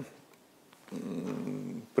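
A man's voice: a faint, steady, drawn-out hesitation sound (a held 'mmm' or 'eee') lasting about a second, starting about a second in after a short silence.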